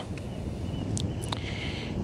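Low, steady outdoor background noise with two short, sharp clicks about a second in.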